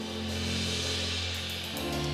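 Live band playing sustained keyboard chords over a low bass, a swelling wash rising above them, with a few quick taps near the end and the chord changing just before the end: a suspense cue before the winning song is announced.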